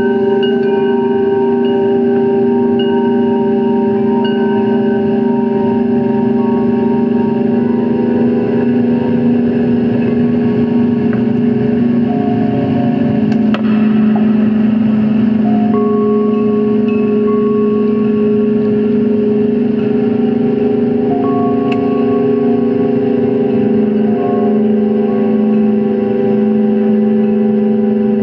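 Drone music played live on an electronic keyboard: a thick, loud chord of held notes. Two low tones sustain unbroken throughout, while higher notes shift every few seconds.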